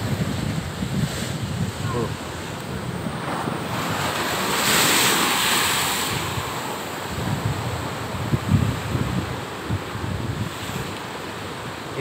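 Rough, high-tide surf breaking and washing over a low sea wall, with one big wave surging through about five seconds in. Wind buffets the microphone.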